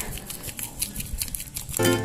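Faint crinkling and rustling as powdered seasoning is shaken from a plastic sachet over fried wonton-skin chips in a metal bowl. Background music starts near the end.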